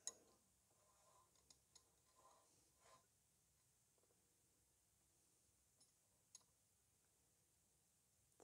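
Near silence, broken by a few faint clicks of a spanner working the bleed nipple on a brake caliper.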